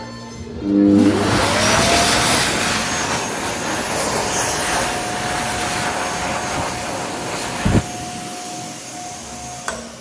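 PHS Vitesse hand dryer starting up: its motor whine rises in pitch over about a second and a half, then it blows steadily with a loud rush of air. A brief thump comes about three-quarters of the way through, and the dryer cuts out near the end.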